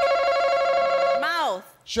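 Game-show face-off buzzer sounding: a steady, loud electronic buzz lasting just over a second, set off by a contestant slapping the buzzer button.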